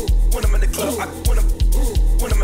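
Bass-heavy dance music from a DJ mix, with a deep pulsing bass line that drops out in short gaps. A short figure bending up and down in pitch repeats over it.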